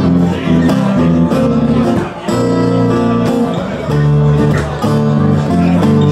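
Instrumental passage played live on two acoustic guitars, one steel-string and one nylon-string, strummed over an electric bass line, with no singing.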